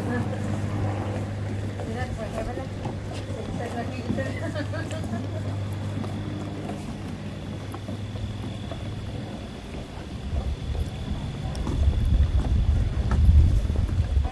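Footsteps on a wooden boardwalk, with faint voices and a steady low hum in the first few seconds. Wind rumbles on the microphone over the last few seconds.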